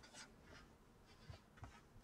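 Faint rustling and brushing of a hardback book being handled and closed: a few short, soft strokes, one near the start and two more past the middle.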